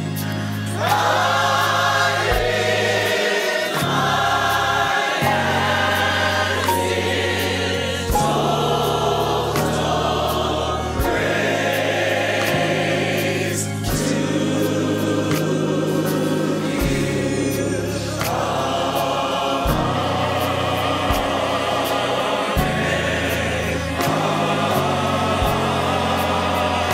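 Large gospel choir singing in harmony, holding long chords that change every second or two over low sustained accompaniment.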